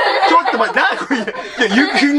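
A girl and a young man talking excitedly, with chuckling laughter.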